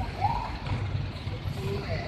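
A large tour coach's diesel engine running as the bus creeps forward at low speed, a steady low rumble, with voices nearby.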